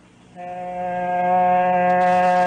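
Train horn sound effect: one long, steady blast on a single low pitch, starting about half a second in.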